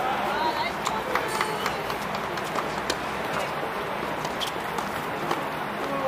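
Tennis balls being struck and bouncing on hard courts: irregular sharp pops, some louder and some fainter, over faint voices and footsteps.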